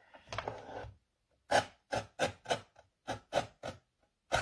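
Paper trimmer's sliding cutter running along its rail and cutting a thin strip off a die-cut card: one longer stroke, then a run of about eight short quick strokes.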